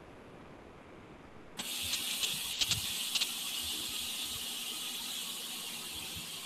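Steady high-pitched hiss of an open video-call microphone line that cuts in suddenly about a second and a half in, after a quiet start, with a few faint clicks soon after.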